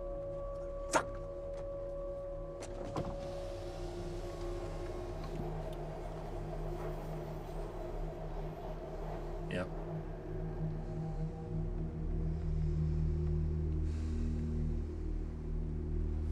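Film soundtrack of a car cabin in stopped traffic: a low, sustained drone of several held tones under the vehicle's hum, swelling about twelve seconds in.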